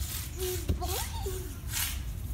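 A young child's voice saying "ball" twice in the first half, over a steady low rumble.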